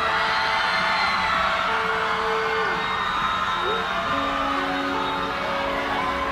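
A keyboard holding soft sustained chords that change a couple of times, under audience cheering and whoops.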